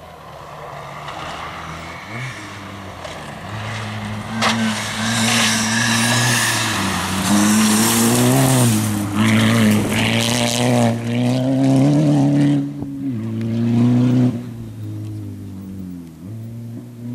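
VW Golf rally car's engine at full throttle on a gravel stage, its note rising and dropping repeatedly with the gear changes and lifts. It grows louder as the car approaches, is loudest as it passes close, and fades near the end as it drives away.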